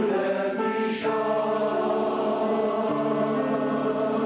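Welsh male voice choir singing held chords in harmony, accompanied on electronic keyboard, with a short break and a change of chord about a second in.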